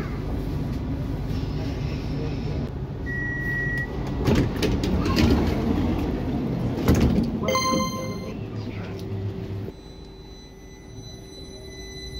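Electric commuter train running slowly into a station, then its sliding passenger doors opening, with a single beep about three seconds in and bumps and clatter as passengers step down onto the platform. A short beeping chime sounds near eight seconds in, and after that the noise drops to the standing train's steady hum.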